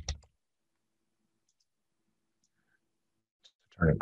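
Near silence between spoken phrases, with a few faint computer mouse clicks.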